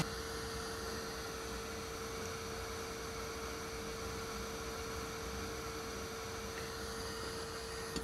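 Steady mid-pitched hum over a faint, even hiss, like a small bench fan or electrical equipment running; no distinct handling or tool sounds.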